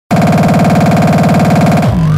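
Hardstyle track made in FL Studio, opening with a loud synthesizer chord that pulses rapidly and evenly, then cuts off just before two seconds in.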